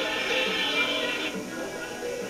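Live folk-band music: a male singer singing into a microphone over electric bass and other instruments, heard as played back from a television. The brighter upper part of the sound cuts off about a second and a half in.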